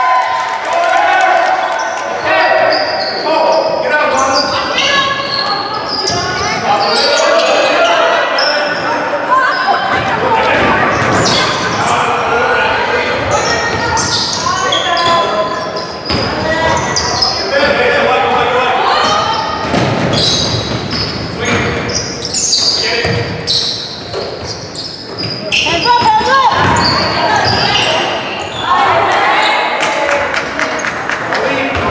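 A basketball bouncing and being dribbled on a hardwood gym floor during play, with players and spectators calling out and talking throughout, all echoing in a large gym hall.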